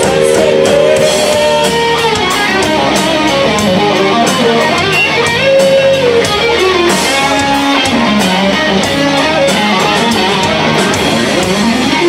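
Live rock band playing loud, with electric guitars over drums and cymbals, no singing, and a lead line that glides up and down in pitch.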